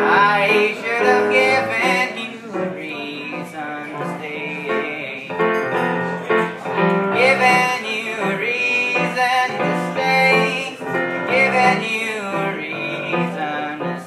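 Kurzweil SP2X digital stage piano played live, a passage of changing chords over a steady bass line.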